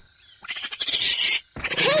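Cartoon raccoons hissing, then a rough snarling growl starting near the end.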